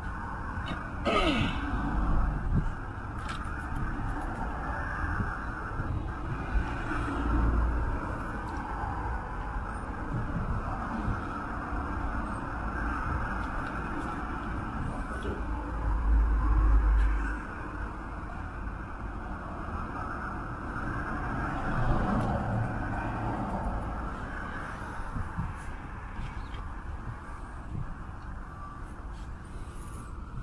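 Steady outdoor traffic noise with low rumbling gusts on the microphone, the strongest about two, seven and sixteen seconds in.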